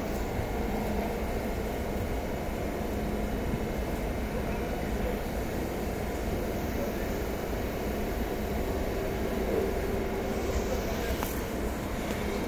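Steady hum and rumble of a stationary TCDD HT80101 high-speed train (Siemens Velaro TR) standing at the platform, its on-board equipment running while it waits to depart.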